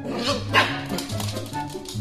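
A Shiba Inu gives a short bark about half a second in, over soft background music with a steady bass line.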